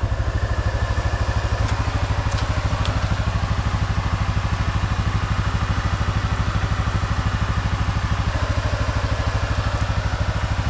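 ATV engine idling steadily with an even low throb while the four-wheeler stands still.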